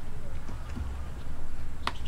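A sharp click near the end, with a few fainter ticks before it, from fishing tackle being handled, over a low steady rumble.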